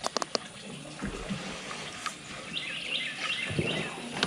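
A few sharp clicks right at the start, then a bird chirping a quick series of high notes about two and a half seconds in, over faint outdoor background noise.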